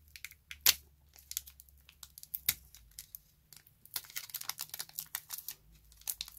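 Foil Pokémon booster pack wrapper crinkling and crackling as fingers pick and tear at its tightly sealed top edge. There are scattered sharp crackles, one loud one about a second in, and they come thick and fast in the last two seconds.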